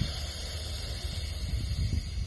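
A slow, audible inhale through the mouth: a steady breathy hiss as part of a qigong breathing exercise. Wind rumbles on the microphone underneath.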